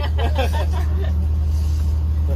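A steady low rumble with no change, with a few spoken words over it at the start.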